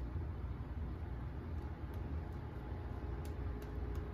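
Blackland Dart double-edge safety razor cutting through lathered stubble, a faint crackle of small ticks in the second half, over a steady low hum.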